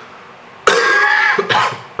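A man clearing his throat and coughing, starting suddenly about two-thirds of a second in, with a second short cough just after; he is sick and his voice is hoarse.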